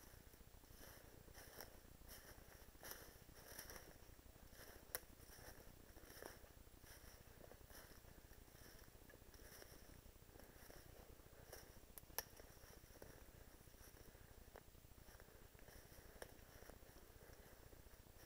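Near silence with faint, intermittent rustling of brush and dry leaves as someone moves on foot through woodland. Two sharp clicks stand out, about five seconds in and about twelve seconds in.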